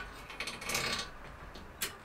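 Faint rattle of a new single-speed bicycle chain being fed by hand over the rear cog, with one short click near the end.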